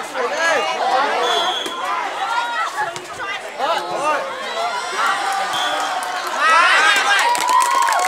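A crowd of teenage students shouting and cheering, many high voices overlapping, louder for the last second or two.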